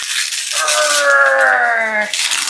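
A paper envelope crackling and tearing as a greeting card is pulled open. From about half a second in, a voice gives one long drawn-out exclamation that slowly falls in pitch.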